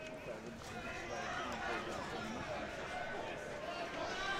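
Faint voices at a football ground: players and spectators calling out over the low hum of the ground.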